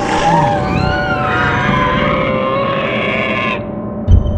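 Movie-style dinosaur roar sound effect, one long call with a wavering pitch that cuts off abruptly about three and a half seconds in.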